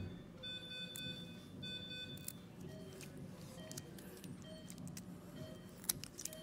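Electronic beeping over a low hum. There are longer multi-tone beeps about once a second in the first two seconds, then short single beeps a little under a second apart.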